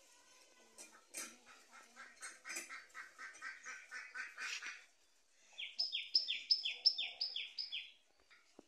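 Birds calling: a fast run of repeated calls, about four a second, growing louder over the first few seconds, then after a short pause six sharp falling calls near the end.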